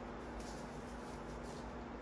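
Quiet room noise with a steady hum, and faint rustling as knee straps are handled.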